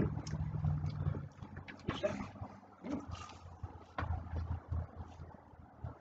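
Chewing and mouth noises close to a handheld microphone as a crispy grilled apple turnover is eaten, with scattered small clicks and low rumbles near the start and again about four seconds in.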